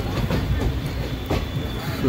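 Indian passenger train running, heard from the open doorway of a coach: a steady low rumble of wheels on the track with a few sharp clacks.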